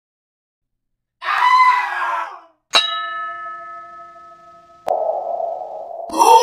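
Animation sound effects. After a second of silence comes a short noisy cry-like sound. Then a single bright bell-like ding rings and fades over about two seconds. A click near the end starts a low steady hum.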